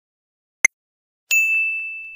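Quiz countdown tick: a single sharp click, the last of a series a second apart. About a second later comes a bright bell-like ding that rings on and fades, the chime that marks the answer reveal.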